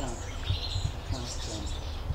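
Small bird calling outdoors: two high, buzzy calls, the second starting about half a second in and lasting just over half a second, over a low background rumble.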